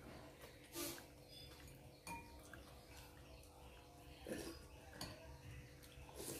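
Quiet sounds of a meal of noodle soup: a few light clinks of chopsticks and spoons against ceramic bowls, and short mouth sounds of eating and slurping, scattered through the quiet.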